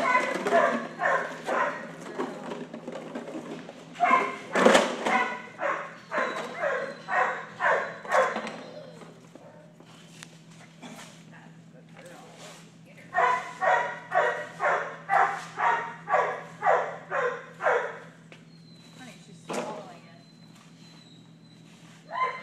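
A protection-training dog barking in runs of quick barks, about two a second, with quieter pauses between the runs.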